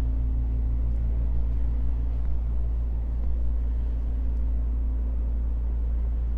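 A steady low hum: a deep, unchanging rumble with a faint droning tone above it.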